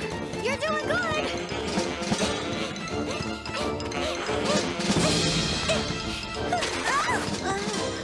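Cartoon background music with short vocal exclamations from animated characters and crash-like sound effects.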